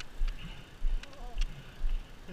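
Low, irregular thumps of wind buffeting a helmet-mounted microphone, with a few light clicks from a BMX bike rolling over pavement.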